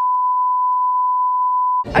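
A steady 1 kHz test-tone beep of the kind played under TV colour bars, one unbroken pitch that cuts off suddenly just before the end.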